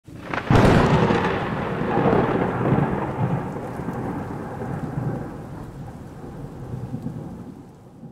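A thunderclap in a storm: a sudden sharp crack about half a second in, then a long rolling rumble that slowly fades, over steady rain.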